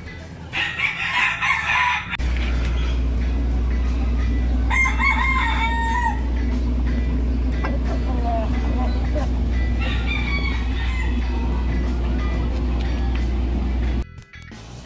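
Gamefowl rooster crowing: a long crow about five seconds in, with shorter calls near the start and around ten seconds. A steady low hum runs underneath from about two seconds in.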